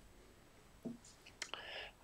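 A nearly silent pause with a faint click, then a short breathy sound just before speech resumes, typical of a person drawing breath before answering.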